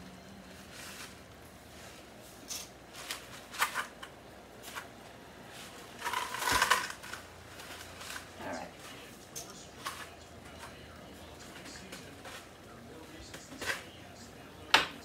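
Dry angel hair pasta being handled and broken by hand: scattered crackles and snaps, with a louder cluster about six to seven seconds in.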